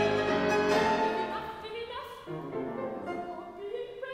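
Live classical chamber music from soprano, violin and piano, in an operatic style, growing softer about halfway through.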